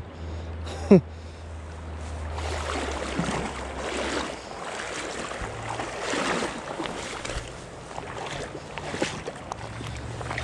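Water splashing and sloshing in uneven surges as a hooked trout is handled at the water's edge, with one brief sharp sound about a second in.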